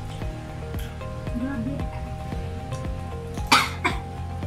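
Background music with a steady beat. About three and a half seconds in, a person gives a short, loud cough, with a smaller second one just after.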